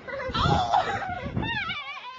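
A small child's high-pitched vocal squeals, several in quick succession, wavering up and down in pitch.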